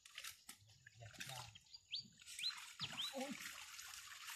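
A small bird chirping four short rising notes in the second half of the clip. Underneath is a soft wash of water sloshing and trickling around a fishing net being hauled into a boat.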